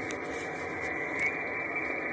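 Steady shortwave band noise, a hiss from an RTL-SDR Blog V3 receiver tuned to the 40 m amateur band near 7.083 MHz, with no station transmitting.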